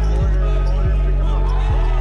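Hip-hop backing music with deep bass notes that slide down in pitch every half second or so, and a wavering vocal or synth line above; the drums drop out for this stretch.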